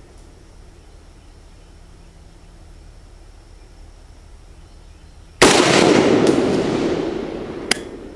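A single AK-47 rifle shot about five and a half seconds in, its report trailing off in a long echo over about two seconds. A short sharp crack follows near the end.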